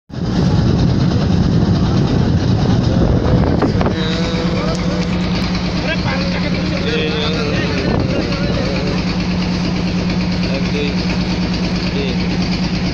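Wooden river boat's engine running steadily under way. It drones roughly for the first few seconds, then settles into an even, pulsing hum about four seconds in, with water washing along the hull.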